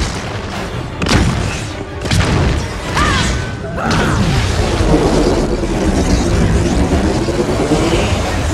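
Film fight-scene soundtrack: booming impacts and explosions over a music score, then from about four seconds in a long continuous energy-beam blast.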